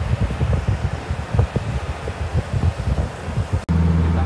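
Wind buffeting the microphone over the road noise of a moving car. Near the end the sound breaks off suddenly and gives way to the steady low engine hum inside a moving bus.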